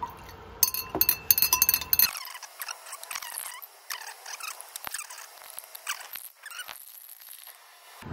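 Glass stirring rod clinking quickly against the side of a glass beaker for a second or so, then scraping and squeaking around the glass as the solution is stirred.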